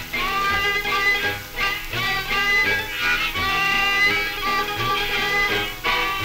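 Jug band music from an old 78 rpm record: an instrumental passage with short low bass notes about twice a second under higher melody lines.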